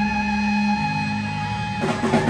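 Live rock band with electric guitars and bass guitar holding sustained notes; the low bass note steps down about a second in, and the drum kit comes back in with heavy hits near the end.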